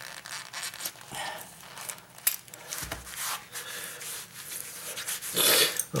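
Utility knife cutting and scraping at the edge of a linoleum patch, a run of short, irregular scratchy strokes, trimming back a puckered ridge. A louder rubbing rustle comes near the end.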